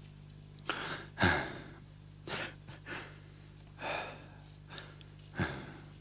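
A man's laboured, gasping breaths, about six of them in uneven succession, the loudest a little over a second in: the ragged breathing of a beaten, bleeding man struggling for air.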